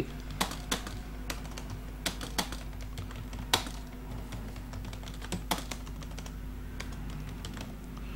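Computer keyboard keys being typed in irregular short clicks, busier in the first half and sparser after, over a faint steady hum.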